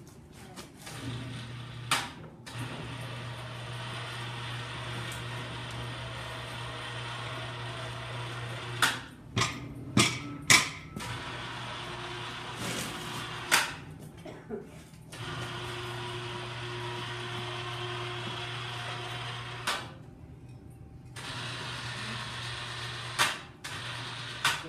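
Gas-fired crucible furnace running with a steady rushing noise and a low hum, broken by several sharp metal clanks from the chain hoist and lifting tongs, the loudest bunched around the middle. The furnace noise drops out briefly near the end and then comes back.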